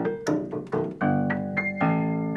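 Prepared grand piano being played: a brisk run of struck chords and single notes, several a second, each starting sharply and dying away quickly, with a strong chord about a second in.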